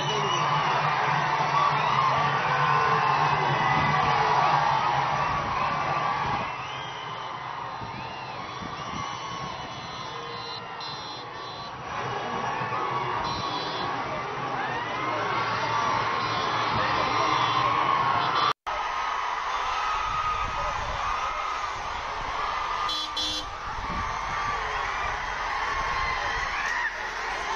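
Large crowd shouting and cheering, quieter for a few seconds in the middle, with a brief dropout about two-thirds of the way through.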